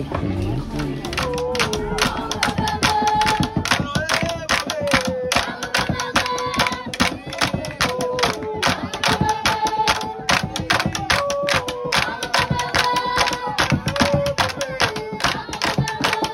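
A group singing a melody over steady rhythmic hand clapping, about three to four claps a second.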